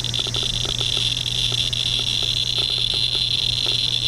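Inspector EXP digital Geiger counter clicking so fast that its clicks run together into a steady high-pitched buzz. The pancake probe is held over an orange Fiestaware plate, whose uranium glaze drives the count rate high.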